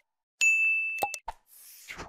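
Animation sound effects of a subscribe button being clicked: short mouse clicks, then a bright notification-bell ding about half a second in that rings for most of a second, more clicks, and a short downward swish near the end.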